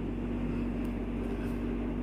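Steady low background hum with a faint held tone and no change through the pause, the constant noise of a small room's machinery.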